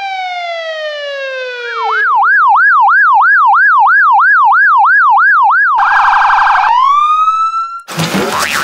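Police siren sound effect. It starts with a slow falling wail, then switches to a fast up-and-down yelp about three or four times a second, gives a short harsh buzz, and rises again near the end.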